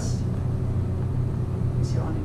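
Steady low-pitched hum, with a brief hiss near the end.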